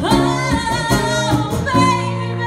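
A woman singing a slow melody, sliding up into long held notes, with electric guitar accompaniment.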